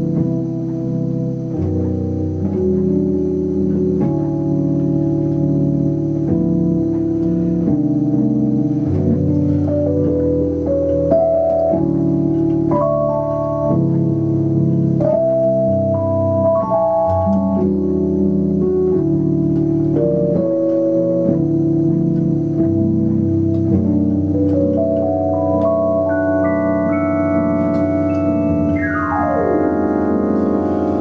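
Electronic keyboard playing a slow, jazzy R&B chord progression in held, sustained chords with no drums. Near the end a run of notes climbs upward, then a quick run slides down the keys.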